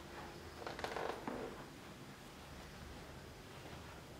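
A brief soft rustle of movement about a second in, over the faint background of a quiet room.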